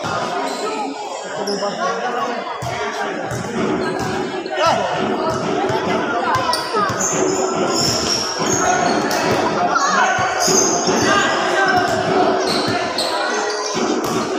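A basketball bouncing on a court floor during a game, with repeated short impacts, mixed with the voices of players and spectators.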